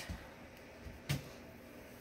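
Quiet room tone with one short click about a second in.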